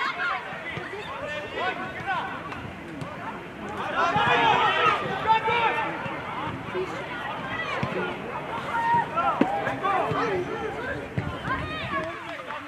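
Several voices shouting and calling out over an open football pitch during play, with a louder burst of shouting from a few voices about four seconds in.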